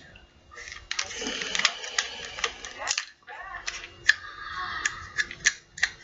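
Plastic child-resistant cap on a methadone take-home bottle being twisted and pushed by hand, giving a run of irregular sharp clicks and scrapes; the cap is stuck.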